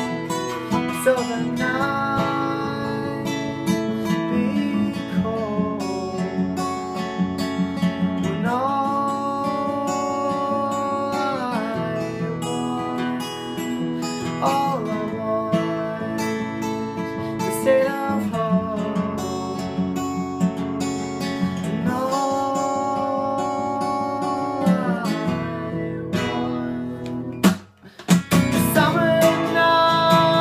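Steel-string acoustic guitar, capoed, strummed steadily, with a man's voice holding long wordless notes twice over the chords. Near the end the sound cuts out for a moment, then the strumming comes back louder.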